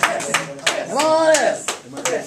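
Hands clapping in a steady beat, about four claps a second, as a small audience in a small room applauds. About a second in, a voice calls out once in a long note that rises and then falls in pitch.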